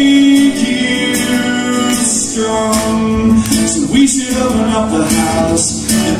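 Live solo acoustic guitar, strummed, with a man singing between lines of the song; a held sung note ends about half a second in.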